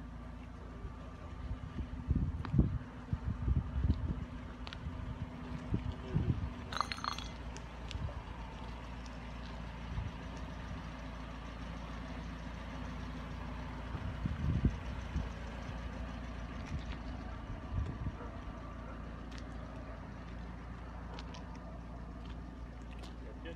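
Steady low hum of vehicles idling, broken by irregular low thumps, heaviest in the first few seconds and again around the middle, with a brief high chirp about seven seconds in.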